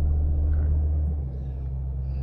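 Low, steady rumble of a Ford Endeavour on the move, engine and road noise heard from inside the cabin, easing slightly about a second in.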